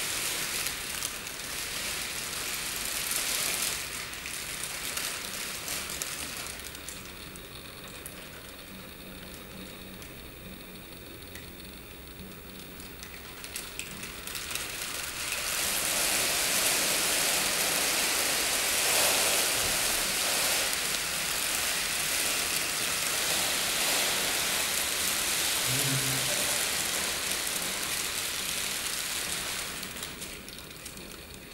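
Plastic sheeting crinkling and rustling as it is moved about, a dense crackle like rain. It thins out for a while, then turns louder and fuller about halfway through.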